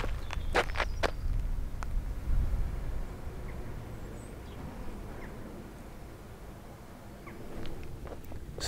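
Outdoor ambience: low wind rumble on the microphone with a few short knocks in the first two seconds, fading to quiet outdoor air.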